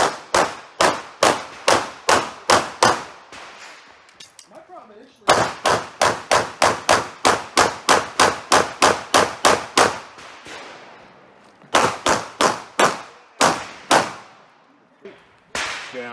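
Semi-automatic pistol fired rapidly in three strings of shots, about three shots a second, with pauses of a second or two between strings.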